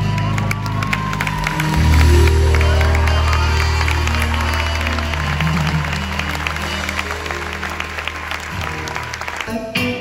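A live band holding a sustained chord, which drops to a lower bass note about two seconds in, while the audience applauds. The sound cuts off suddenly near the end.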